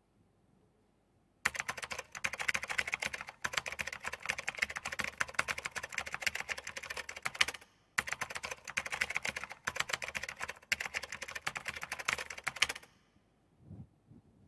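Typing sound effect: a rapid run of key clicks that starts about a second and a half in, breaks off briefly a few times, and stops shortly before the end.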